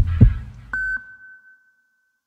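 Two deep thumps in quick succession, then a single bright electronic ping that rings on and fades away over about a second: a logo-reveal sound effect.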